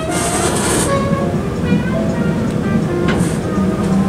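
Otis traction elevator's sliding doors opening at a floor, with a hiss in the first second and again about three seconds in, over a steady low hum. Background music with scattered short notes plays underneath.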